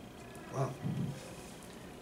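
Two brief, low, wordless sounds from a man's voice, about a third of a second apart, a little after the half-second mark.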